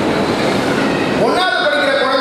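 A man's voice through a public-address microphone, loud and rough-sounding: a noisy rush with no clear pitch fills about the first second, then his voice resumes with a rising pitch.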